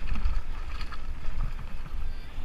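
Wind rumbling on a helmet-mounted action-camera microphone over a Lapierre Spicy 327 mountain bike rolling fast down a rocky gravel trail, its tyres running over loose stones with scattered clicks and rattles.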